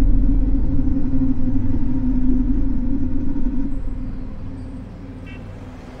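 A loud low rumble with a steady droning hum over it, fading gradually to a lower level from about four seconds in.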